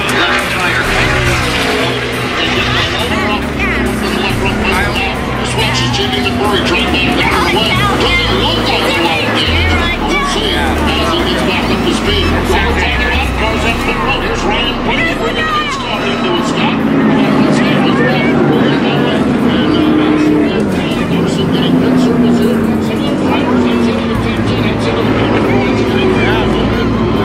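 NASCAR Cup Series race cars' V8 engines running at full speed as the pack streams past on the track, the pitch gliding as cars go by.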